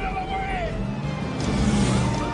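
Film soundtrack from a car-chase scene: background music with a car engine running underneath, and a rush of noise coming in near the end.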